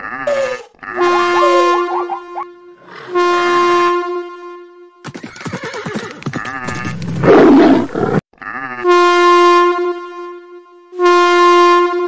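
Cartoon sound-effects mix: four long, steady blasts of a locomotive horn, each a second or more, with short gliding animal cries near the start. In the middle, from about five to eight seconds, comes a dense stretch of rapid stamping and clatter that ends in a loud animal cry.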